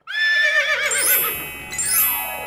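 A horse whinny sound effect: one high, quavering call that starts suddenly out of silence and fades. Near the end a rising, chime-like shimmer of music sweeps up over it.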